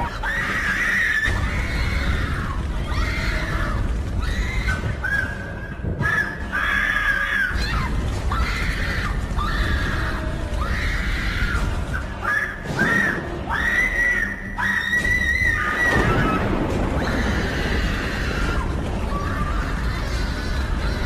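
Horror film soundtrack: a low rumbling score under a string of high-pitched screams. The screams start short and become longer, held cries for a few seconds before the end.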